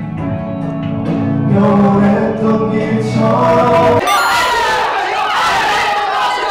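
Background music with held, choir-like chords over a steady bass line. About four seconds in it is cut off suddenly by a group of people shouting loudly together.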